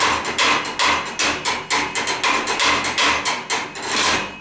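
Rapid, even chopping: a knife knocking on a wooden board about five times a second, held up as a steady rhythm.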